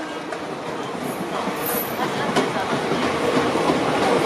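Passenger train arriving behind a WAP-4 electric locomotive: a steady rumble and clatter of the coaches' wheels on the rails, building slightly.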